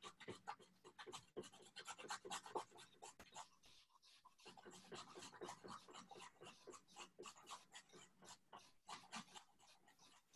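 Sweet potato being grated on a stainless-steel box grater: faint, quick scraping strokes, several a second, with a short pause about four seconds in.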